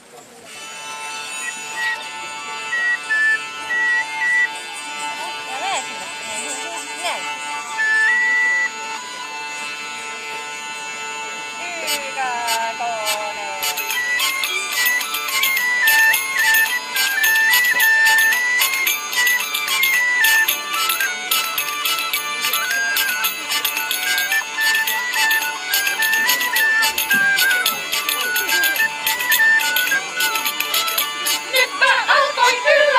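Medieval-style instrumental introduction: a hurdy-gurdy plays a stepping melody over its steady drone. About halfway through, recorders and jingling tambourine percussion join in, and the tune becomes fuller and busier.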